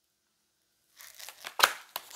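Tarot cards rustling and flicking as a card is drawn from the deck, starting about halfway through with a few sharp papery snaps.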